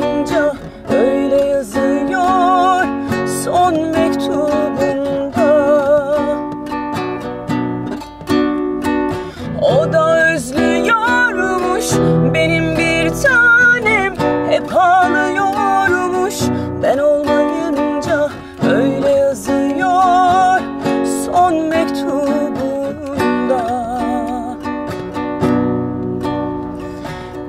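Nylon-string classical guitar strummed in chords, with a woman's voice singing a slow melody with vibrato over it.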